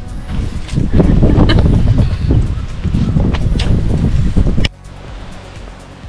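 Background music with a steady beat. It falls away sharply in level about three-quarters of the way through.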